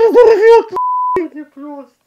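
A man's loud voice, then a short steady 1 kHz censor bleep lasting under half a second, then quieter speech.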